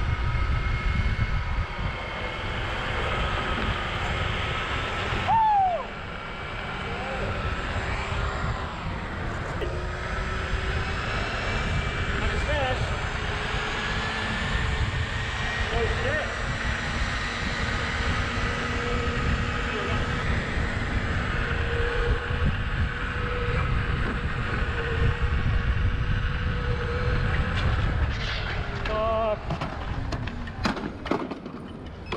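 Wind rushing and buffeting on a helmet-mounted action camera at around 25 mph, over the steady whine of electric hub motors and tyre noise from electric unicycles and electric skateboards at speed.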